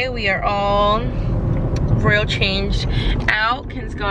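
Steady low road and engine noise inside a moving car's cabin, under a woman's talking.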